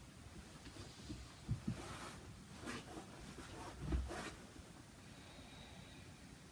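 Faint sounds of a person moving on a yoga mat: a few soft low thumps, about a second and a half in and again near four seconds, with brief rustles in between as the body shifts from upward dog back into child's pose.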